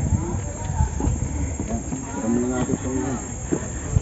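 Wind buffeting the action camera's microphone with a fluctuating rumble, with people's voices in the background; one voice is drawn out a little past two seconds in.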